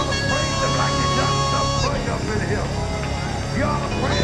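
Live gospel music from a church band, with a steady bass under it and a long held note that stops about two seconds in. A man's voice comes over it through the microphone, mostly in the second half.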